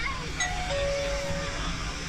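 Electronic two-note chime, a short higher note followed by a longer, lower held note, signalling that a drone-delivered parcel has arrived at the pickup window.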